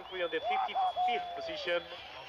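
A man's voice speaking; the sound is speech.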